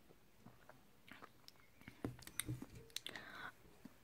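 Faint sipping and swallowing of a drink from a glass, with small clicks and mouth noises clustered about halfway through.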